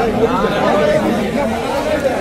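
A crowd of men chattering, several voices talking over one another in a large room.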